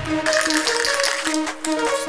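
Background music: a track with a steady beat and a repeating run of short pitched notes.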